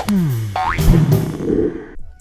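Cartoon sound effect with sliding pitch, first falling and then quickly rising, over a short music sting.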